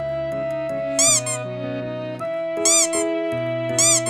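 Cheerful children's background music, a simple melody over held bass notes, with three short, loud squeaks, each rising then falling in pitch: about a second in, near the middle and near the end.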